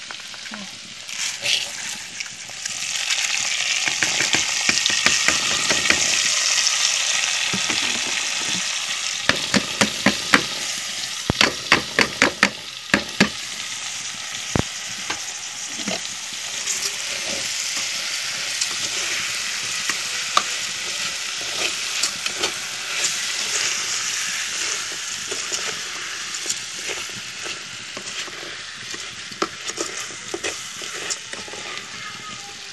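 Linguiça sausage and raw rice frying in hot fat in an aluminium pot on a wood-fired stove: a steady sizzle that grows louder a few seconds in as the rice goes in. A spoon stirs the pot, with a run of sharp clicks against the metal about ten to fourteen seconds in.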